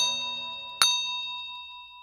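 Two bright bell-like dings, the second less than a second after the first, each ringing out and fading: a notification-bell sound effect.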